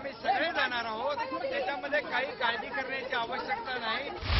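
Speech only: a man talking, with other voices overlapping him.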